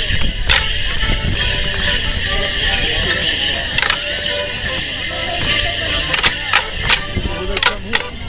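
A Morris dance tune played on an accordion, with the dancers' leg bells jingling. Wooden Morris sticks clack together now and then, more often in the last couple of seconds.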